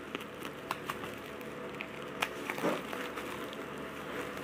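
Scissors cutting and plastic bubble wrap crinkling as a wrapped package is opened, with a few sharp clicks spread through.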